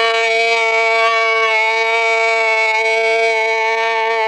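A man's voice holding one long sung note with a slight waver, after swooping up into it just before, in the chanted style of a zakir's majlis recitation.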